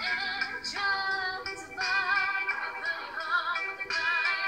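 A woman singing a cover song over instrumental accompaniment, holding notes with a wavering vibrato, most plainly a little after the middle.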